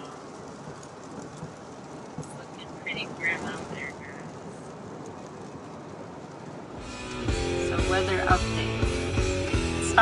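Steady hiss of rain and wet tyres heard inside a moving car. About seven seconds in, background music with a regular beat comes in and takes over.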